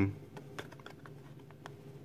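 A few light, scattered clicks and taps of fingers handling a small cardboard Matchbox toy box as it is turned over.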